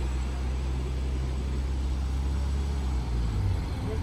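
Steady low rumble of a motor vehicle's engine running nearby, its pitch shifting slightly about three seconds in.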